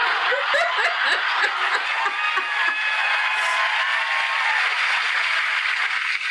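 Theatre audience laughing and applauding after a stand-up comedian's punchline, starting suddenly and staying steady, with a woman laughing along close to the microphone.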